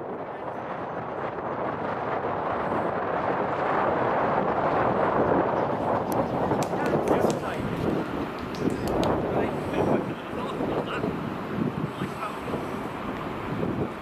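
Wind buffeting the microphone over station ambience, with a diesel-hauled train approaching in the distance. The noise swells over the first few seconds, then goes on in uneven gusts.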